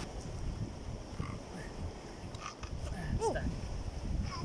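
Low wind rumble on the microphone, with a short falling call about three seconds in.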